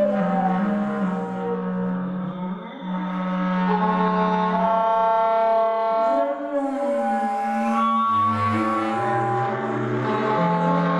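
Live concert music from woodwind soloists and a string ensemble: long sustained notes overlapping in several parts, with a low note entering about eight seconds in.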